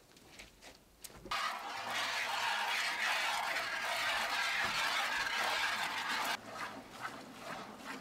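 Hand milking of dairy cows: streams of milk squirting into plastic buckets make a loud, steady hiss that starts suddenly about a second in and cuts off abruptly, followed by fainter separate squirts a few times a second.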